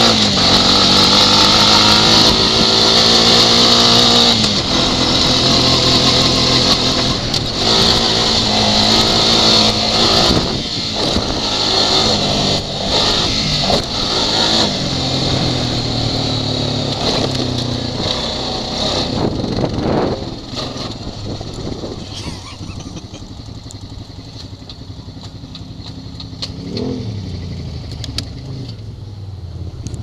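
ATV engine running under way, its pitch rising and falling with throttle and gear changes. After about twenty seconds it drops to a quieter, slower run, with a short rev near the end.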